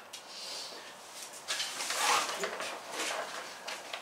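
A large sheet of paper rustling and crackling as it is handled, in a run of brisk bursts that is loudest around the middle.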